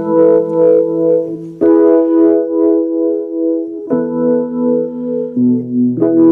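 Keyboard instrumental: sustained electric-piano or synthesizer chords that change three times, about every one and a half to two seconds, with no voice.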